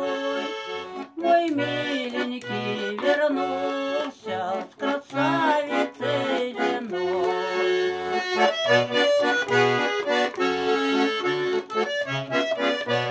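Russian garmon (button accordion) playing the song's melody between sung verses, with steady bass notes from the left-hand buttons under the tune.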